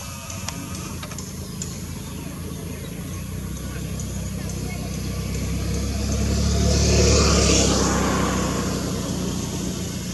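A motor vehicle passing by with a low engine hum. Its sound builds, is loudest about seven seconds in, then fades away.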